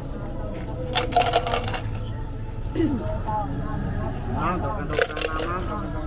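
Two short bursts of light, bright metallic clinking, about a second in and again near five seconds, over the chatter of a crowd.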